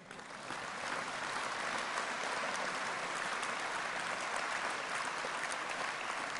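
A large hall audience applauding, the clapping swelling over the first second and then holding steady.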